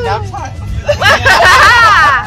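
Women's high-pitched excited voices, loudest from about one second in, over the steady low rumble of a car cabin on the road.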